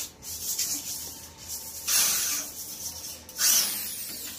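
Electric drill boring into a plastered wall, in two short bursts about a second and a half apart.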